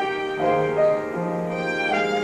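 Violin playing a slow melody in held, bowed notes over piano accompaniment: the instrumental introduction before the singers come in.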